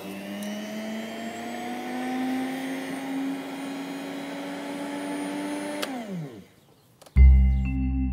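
Electric lawn mower's motor starting at once, its hum rising briefly as it spins up, then running steadily. About six seconds in it is switched off and winds down, falling in pitch. Music starts about a second later.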